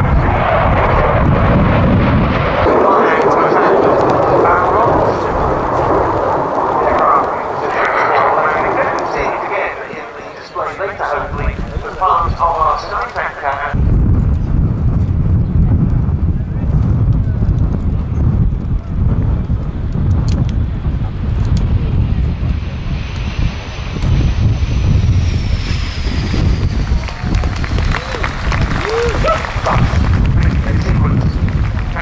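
Boeing F/A-18C Hornet's twin General Electric F404 turbofans running hard in a display pass. About halfway the sound changes abruptly to a low jet rumble as the Hornet comes in to land, with a high engine whine falling in pitch near the end.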